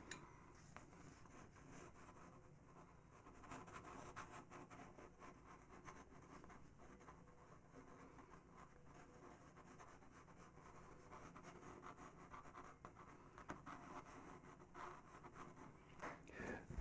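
Faint scratching of a Faber-Castell PITT pastel pencil stroking across PastelMat paper, in short scattered bursts over a near-silent room.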